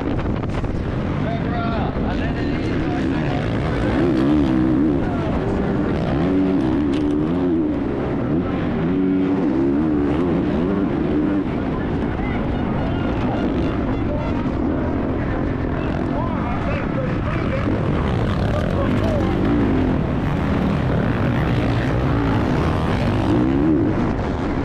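Onboard sound of a Honda 450cc single-cylinder four-stroke motocross bike engine at race pace. Its pitch swings up and down again and again as the throttle opens and closes through jumps and ruts.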